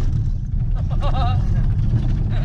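The rally team's V8 supercharged ute driven on a rough outback track, heard from inside the cabin: a steady low rumble of engine and road. Men's voices shout over it around the middle.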